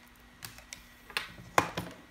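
A few sharp clicks and knocks of a plastic wired mouse being handled and set down on a wooden desk, the loudest about one and a half seconds in.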